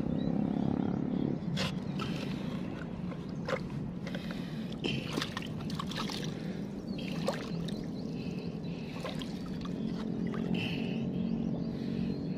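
Shallow seawater sloshing and light splashing, with scattered small clicks, as a hand digs down into the wet sand of a seagrass bed after a peanut worm. A steady low hum runs underneath.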